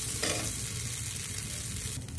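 Washed basmati rice and dry fruits roasting in hot ghee in a steel pressure cooker: a steady sizzle as a ladle stirs them through the pan.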